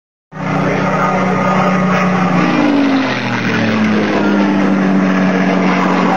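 A motor vehicle's engine running close by, a loud steady low hum whose pitch slides a little up and down. It starts abruptly about a third of a second in.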